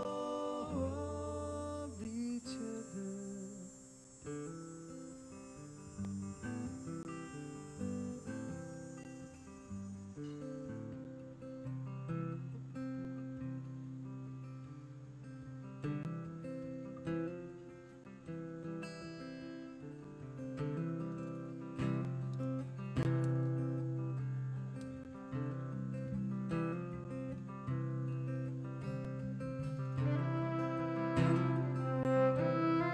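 Live folk-rock band playing an instrumental passage led by strummed acoustic guitar, with a steady low bass line filling in from about the middle. A fiddle joins near the end.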